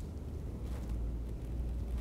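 Quiet, steady low rumble of outdoor background noise, with no distinct event standing out.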